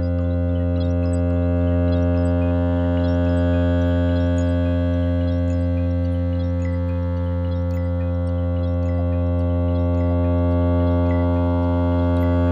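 Modular synthesizer music: a steady low drone of many layered held tones, with sparse short high pips scattered irregularly over it.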